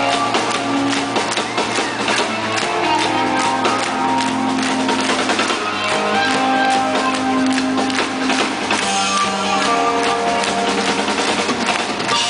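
A live rock band plays loudly on stage, with electric guitar holding sustained notes over a steady drum-kit beat. It is heard from the audience at a concert.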